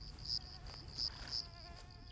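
Flies and other insects buzzing in summer heat: a steady high-pitched insect drone that swells three times, with fainter wavering fly buzzes beneath it.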